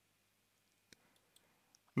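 Near silence with a couple of faint, short clicks, the clearest about a second in.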